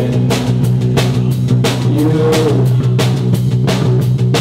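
Live indie rock band playing: the drum kit beats a busy rhythm of about four or five hits a second over a steady held bass and guitar tone.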